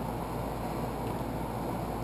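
Steady background noise, an even hiss with a low rumble underneath, with no distinct sound events.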